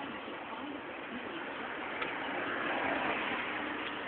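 Road and traffic noise heard from inside a moving car: a steady rushing of tyres and engines that grows louder about halfway through, with a faint click about two seconds in.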